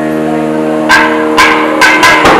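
A nadaswaram ensemble holds a long, steady note. About a second in, thavil drum strokes come in, three sharp hits about half a second apart.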